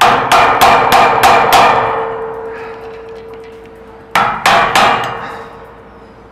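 Hammer blows on the brass magnetic cylinder protector of a security-door lock in a break-in test: six quick metallic strikes, about three a second, then a pause and three more a little after four seconds in. A ringing metal tone hangs on between the bursts.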